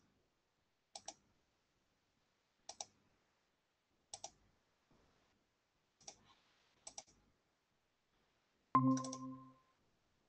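Faint computer mouse clicks, five quick press-and-release pairs spread a second or two apart, as windows are switched on screen. About nine seconds in, a short electronic notification chime sounds suddenly and fades within a second.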